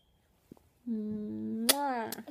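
A person humming one held 'mmm' note through pursed lips for about a second, the pitch steady and then dipping at the end, with a sharp click near the end like a lip smack.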